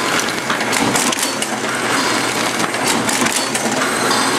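Bourg AE22 booklet maker running: a steady mechanical clatter from its stitching head, feed rollers and paper transport, with many sharp clicks as the sheet set is fed through and saddle-stapled.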